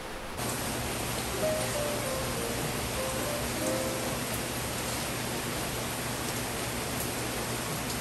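Steady heavy rain pouring down.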